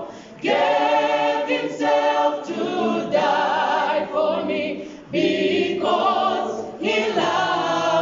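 Mixed-voice choir singing a Christian hymn a cappella in harmony, in sustained phrases with short breaks for breath about half a second in, at about five seconds and near seven seconds.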